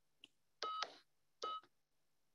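Two short electronic beep tones about a second apart, with a faint click just before them.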